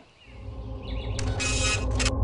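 A low rumble fading in and swelling steadily, with a brief burst of hiss about a second in.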